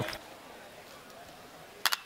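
Low stadium crowd ambience, then near the end a single sharp crack of a metal baseball bat hitting the pitch, driving it as a ground ball up the middle.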